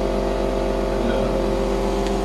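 A steady machine hum, unchanging throughout, with several steady tones over a strong low drone.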